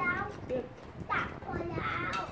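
A toddler babbling in short, high-pitched vocal sounds.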